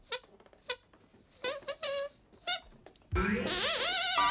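A glove-puppet dog's squeaker voice making several short, high squeaks in reply. About three seconds in, music with wavering tones starts.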